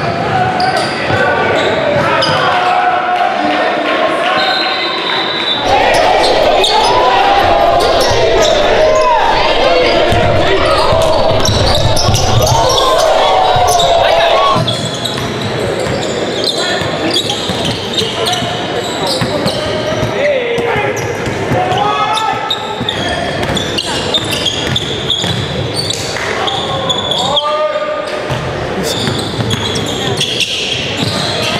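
Basketball game sound in a gym: a ball bouncing on the hardwood under players' and spectators' voices, echoing in the hall. The sound level jumps up about five seconds in and falls back about halfway through as the footage cuts between games.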